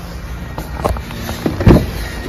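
Geely Geometry electric car's rear door being opened by its pop-out flush handle: a short click a little under a second in, then a louder clunk of the door latch releasing near the end.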